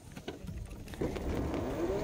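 A motorcycle engine picking up revs about a second in, its pitch rising steadily as the bike pulls away over a low rumble.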